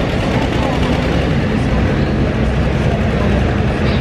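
Antique John Deere tractor engine working steadily under load as it drags a weight-transfer sled in a tractor pull, heard inside an indoor arena.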